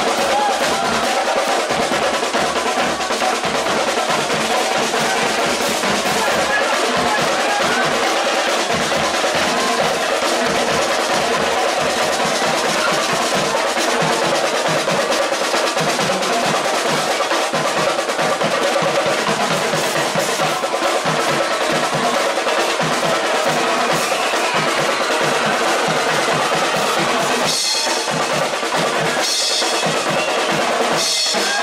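Marching band playing: brass (trombones, horns, trumpets) over snare and bass drums, loud and continuous, with a brief break in the low notes near the end.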